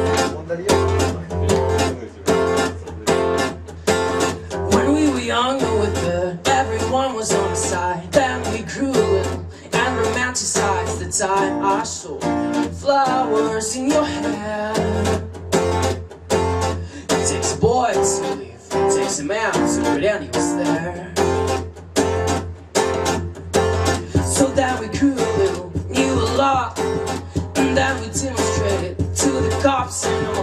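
Acoustic guitar strummed in a steady rhythm, with a man's voice singing over it through a microphone.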